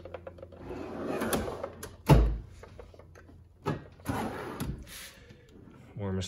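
Steel drawers of an Icon tool chest sliding on their runners. One drawer rolls shut and closes with a loud thump about two seconds in, and another drawer slides open in the second half.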